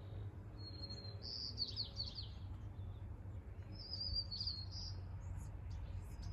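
Small birds chirping and singing in two short bursts, about a second in and again about four seconds in, over a steady low rumble.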